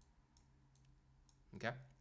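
A few faint, light clicks from drawing on a slide with a digital pen.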